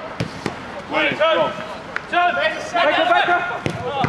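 Men shouting and calling to each other during a five-a-side football game, with a few sharp knocks of the ball being kicked, the last one near the end.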